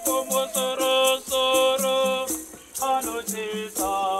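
Large choir singing a Shona Catholic hymn in several-part harmony, accompanied by rattles shaken in a steady beat. The singing breaks briefly between phrases, about two and a half seconds in and again near the end.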